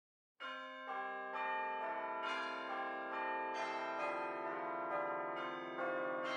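Bells ringing, a new struck tone of a different pitch coming in roughly every half second, each ringing on beneath the next.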